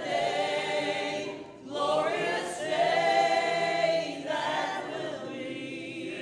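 A group of voices singing together in a church, in long held phrases with short breaks about a second and a half in and again around four seconds.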